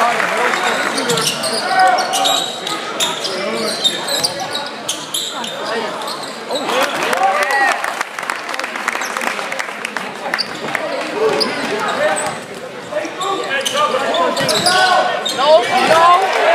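Live court sound of a basketball game in a gym: the ball bouncing on the hardwood floor, sneakers squeaking in short rising-and-falling squeals, and voices from players and spectators.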